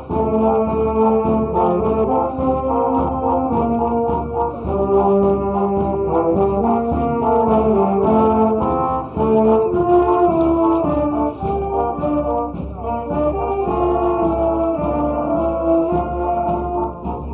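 Filarmónica wind band playing continuously, led by trombones, tuba and saxophones holding sustained notes in a moving melody.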